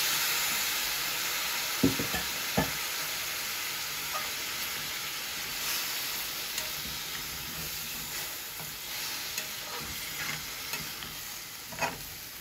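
Chicken and onions sizzling in a hot aluminium pan just after liquid is poured in. The sizzle is loudest at first and slowly dies down. A metal spatula knocks and scrapes in the pan as the food is stirred, with two sharper knocks about two seconds in.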